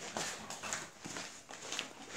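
A dog chewing a treat: faint, irregular crunching and clicking of teeth.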